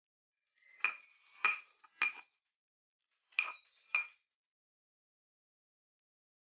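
Stone pestle knocking against a stone mortar while grinding peanut sambal: five short clinks, three then two, each with a brief ring.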